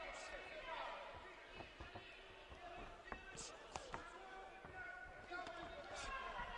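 Faint ambience of an amateur boxing bout in a large hall: a low hubbub of distant voices and crowd, with a few short, sharp thuds of gloved punches landing, about one and a half, three and three and a half seconds in.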